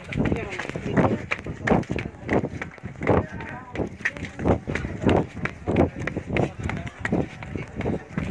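A person panting hard while running up stone steps, with a loud voiced breath about one and a half times a second and footfalls on the stone.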